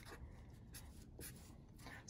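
Faint scratching and rubbing on a sheet of paper on a tabletop, from a pen and hands moving over it.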